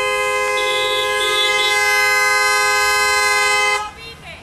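Car horn held down in one long, steady blast of two tones sounding together, cutting off suddenly near the end.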